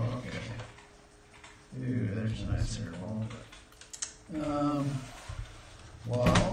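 Plastic case of an Apple Extended Keyboard II clicking and rattling as its halves are handled and pulled apart, with a sharp click about four seconds in.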